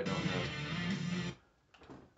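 Overdriven electric guitar sustaining a held lead note, the slide up to the 12th fret of the G string, then stopped short about a second and a third in.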